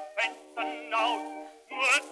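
Acoustic-era 78 rpm record of a Viennese song: strings and zither play the instrumental introduction, the melody in short phrases with wide vibrato. The sound is thin and narrow, with no deep bass, as on an old shellac disc.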